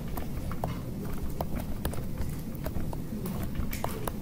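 Stylus tapping and clicking on a tablet screen while drawing, in irregular short taps a few times a second, over a low steady background rumble.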